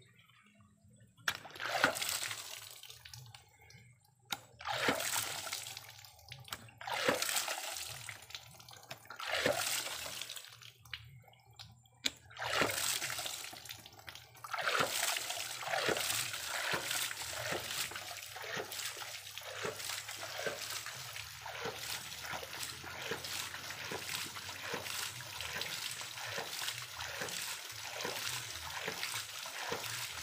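Hydraulic ram pump built from 4-inch PVC pipe starting up: water gushes from its waste valve in a few separate surges two to three seconds apart, then it settles into a steady, quick rhythm of valve strokes, each one a pulse of splashing water, as the pump runs on its own.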